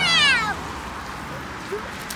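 A single short, high-pitched cry that slides down in pitch over about half a second, followed by quieter background noise with a faint steady low hum.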